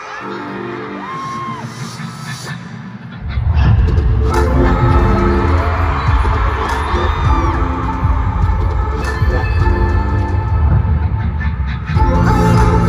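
Live K-pop concert music over an arena sound system, heard from among the audience: a lighter intro of held synth chords, then a heavy bass beat comes in about three seconds in and the music gets much louder.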